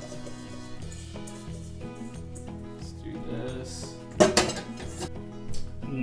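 A stainless steel mixing bowl clattering briefly against the pan about four seconds in, with a few lighter knocks before it, over background music with steady notes.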